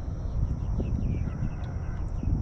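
Wind buffeting the microphone in an irregular low rumble, with faint bird chirps in the background.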